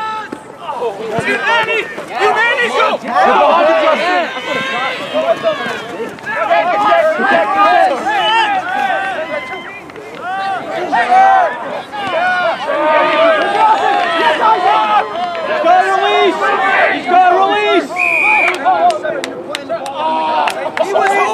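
Many voices shouting and calling over one another: players and sideline spectators at a rugby match. A short, steady whistle blast comes near the end, most likely the referee's.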